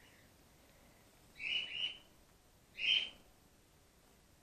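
Grey-headed flying-fox giving three short high calls while being handled: two close together about a second and a half in, then a third a second later.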